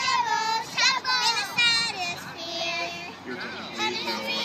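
Young girls singing in high voices: short notes sliding up and down for the first couple of seconds, then longer held notes.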